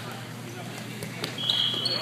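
Indoor volleyball rally in a large hall: players' voices calling out, a few sharp ball or hand impacts, and a short high-pitched squeak about a second and a half in.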